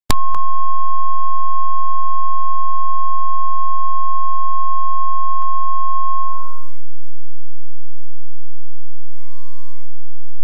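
Steady test tone of a videotape's bars-and-tone leader, starting with a click. It cuts off about seven seconds in, and a short beep at the same pitch follows near the end.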